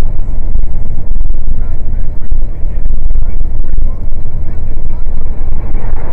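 Loud, steady low rumble of a truck driving at road speed, its engine and road noise picked up by a dashcam in the cab.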